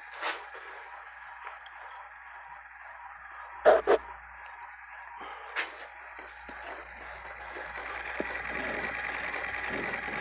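Homemade magnet rotor, a small plastic PET bottle fitted with magnets, spinning on its metal axle with a steady whirring hum that grows louder over the last few seconds. A few sharp knocks come near the middle.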